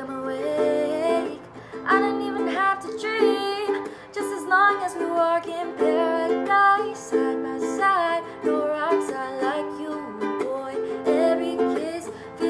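Ukulele strummed in a steady rhythm accompanying women singing a slow pop ballad.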